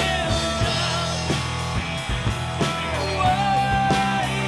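Live rock band playing: electric guitar, bass guitar and a Mapex drum kit with steady drum hits and held melodic notes over them.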